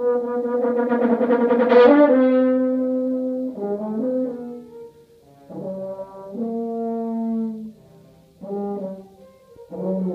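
French horn played solo. A long held note swells to a loud, bright peak about two seconds in, followed by shorter notes and phrases with brief pauses between them.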